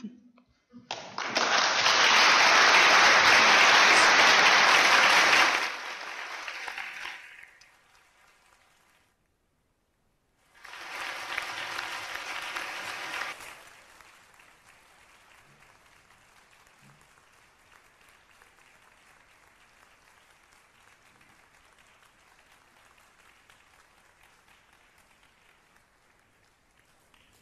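Audience applauding in a hall: a loud round of clapping for about five seconds that dies away, then a second, shorter and weaker round.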